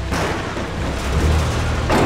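Heavy rain pouring, a dense steady hiss that starts abruptly, over a low rumble that swells near the end.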